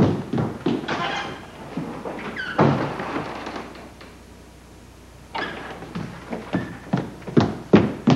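Thuds and knocks of a wooden door being handled: several in the first few seconds, a lull in the middle, then more from about five seconds in.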